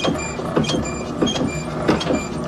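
Coin-operated kiddie ride running, its motor and rocking mechanism clacking over and over in a steady rhythm.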